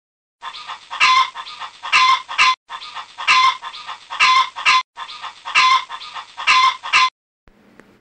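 Rooster calling: a sequence of loud calls about two seconds long, heard three times over in an identical pattern with short breaks between.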